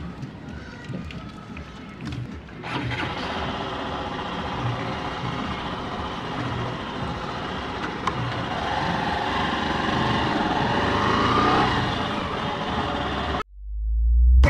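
A Hero Glamour BS6 125 cc single-cylinder motorcycle engine running while the bike is ridden, under a steady rush of wind and road noise. The sound gets louder about three seconds in, then builds with rising pitch as the bike picks up speed, and cuts off suddenly near the end.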